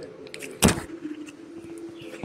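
A single sharp thump a little over half a second in, over a steady low hum.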